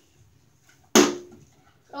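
A plastic water bottle landing on a bathtub's rim with one sharp knock about a second in, ringing briefly; the flip lands with the bottle standing upright.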